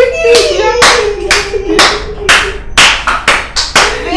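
Hands clapping about twice a second, the claps coming quicker near the end, with a voice holding a wavering sung note over the first half.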